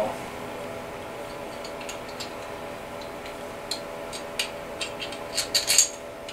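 Light metal clicks and clinks of a connecting rod cap and its nuts being handled as the rod comes off a Kohler KT17 crankshaft, with a quick cluster of clinks near the end. A faint steady hum runs underneath.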